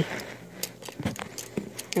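A stack of Kennedy half-dollar coins clicking against each other as they are thumbed through in the hand: a string of irregular light metallic clicks.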